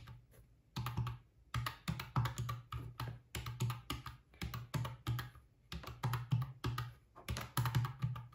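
Plastic keys of a white desktop calculator being pressed in quick succession, about three short clicks a second, as a column of figures is added up.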